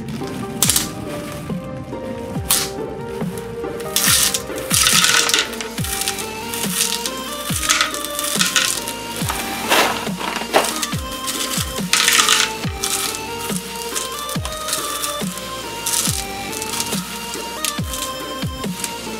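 Background electronic music with a steady kick-drum beat.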